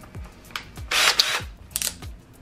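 Cordless drill run in two short bursts while its keyless chuck is tightened onto a drill bit, one burst about a second in and a shorter one near the end. Background music with a steady beat plays underneath.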